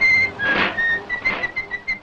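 A quick run of short, high whistled notes hopping between pitches, like a fast tune, over a steady hiss.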